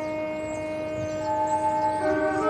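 A high school marching band's wind section holding a long sustained chord, with a higher note joining about a second in.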